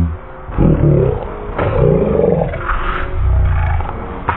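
Cartoon voice audio played back at a quarter of its speed. It is deep and drawn out, its pitch sliding up and down, and the words cannot be made out.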